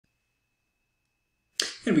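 Digital silence for about a second and a half, then a man's voice starts abruptly, speaking.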